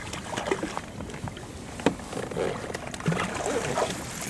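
Quiet handling noises of a trolling rod and reel while a hooked trout is played toward the boat, with scattered knocks and one sharp click about two seconds in.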